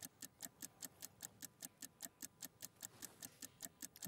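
Faint, steady, fast ticking of a countdown-clock sound effect, about five ticks a second, unbroken.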